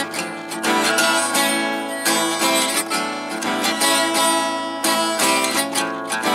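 Acoustic guitar strummed in a steady rhythm of repeated chords, with no singing.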